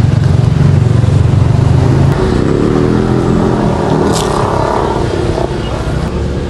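Road traffic close by: a motor vehicle engine running loudly as it passes, a deep rumble at first, then a higher pitched engine note from about two seconds in that fades out. A short crisp crunch about four seconds in.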